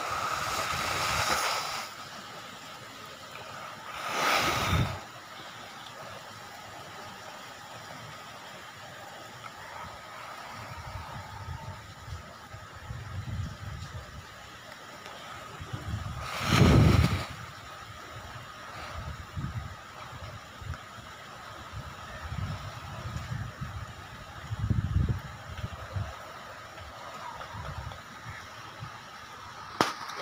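Cyclone wind and heavy rain: a steady rushing hiss broken by strong gusts that buffet the microphone, loudest about sixteen seconds in, with further gusts near the start and about four seconds in.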